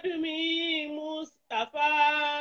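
A high voice singing two long held notes, broken by a short gap about one and a half seconds in.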